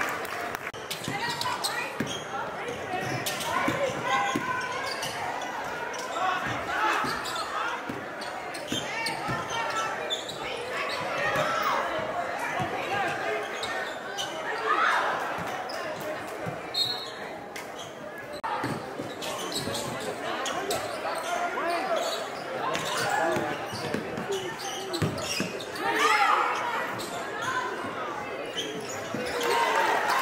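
Live game sound of a basketball game in a gymnasium: a basketball bouncing on the hardwood floor in repeated knocks, amid crowd voices and shouts that echo in the hall.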